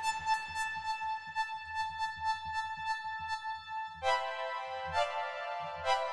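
Ableton Operator FM synth sounding a sustained note over a low pulsing part underneath. About four seconds in, the tone switches to a lower, brighter, buzzier timbre as the oscillator waveform is changed.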